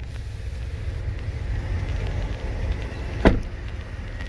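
Low rumble of a phone being carried, with wind on its microphone, and one sharp knock about three seconds in.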